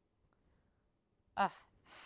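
Near silence, then about a second and a half in a woman's short sighing "ugh" of delight that trails off into breath.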